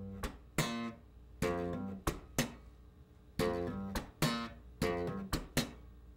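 Electric bass playing a slow G minor funk phrase: hammered-on notes, sharp percussive slaps of the hand on the strings, a plucked note and muted ghost-note clicks, several strokes a second.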